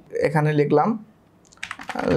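Computer keyboard typing: a quick run of keystrokes in the last half second.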